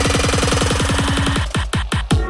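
Instrumental break of an electronic hip hop track: a fast roll of deep drum hits under a sustained note, building up, then breaking off about three-quarters in to a few slower, deep hits.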